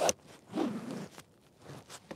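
A short zip-like rustle lasting under a second, starting about half a second in, followed by a faint scrape near the end: fishing gear and a bait bag being handled on the kayak as bait is got out.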